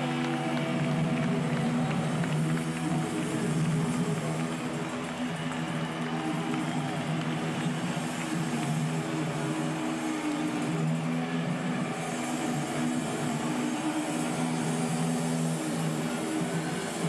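Sustained low drone from guitar amplifiers left ringing on stage after a rock song, with audience noise underneath.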